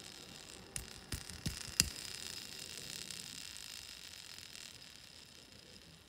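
Four light clicks from a diecast Hot Wheels car being handled between the fingers, all within the first two seconds, then faint room hiss.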